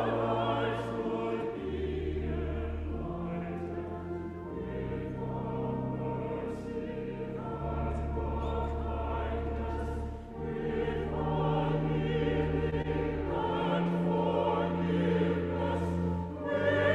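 Church choir singing with vibrato over sustained low accompanying notes that shift every second or two.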